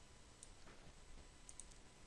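Near silence with a few faint computer mouse clicks, including a quick pair about one and a half seconds in.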